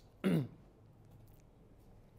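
A man clearing his throat once, briefly, the sound falling in pitch, just after a light click.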